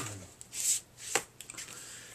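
Vinyl LP jacket in a plastic outer sleeve being handled: a short rustle of plastic about half a second in, then a sharp click a little after one second.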